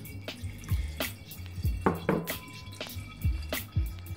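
Cold brew coffee being poured in a stream into a paper filter in a pour-over cone, splashing in the filter, with filtered coffee dripping into a glass jar below; the splashes and drips come at irregular moments.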